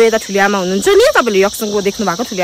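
A woman talking, with a steady, high-pitched drone of insects behind her voice.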